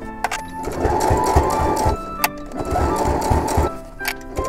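Domestic sewing machine stitching through layered canvas and lining fabric, in two runs of about a second each with a short pause between.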